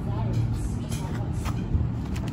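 Light taps and rustles of a cardboard box and plastic-wrapped wax melts being handled, over a steady low rumble and faint background voices.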